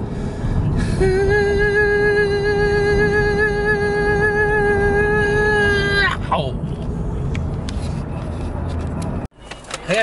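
A singing voice holding one long, high note for about five seconds, wavering slightly, then sliding down at the end, over the low road rumble of a car cabin. The rumble cuts off abruptly near the end.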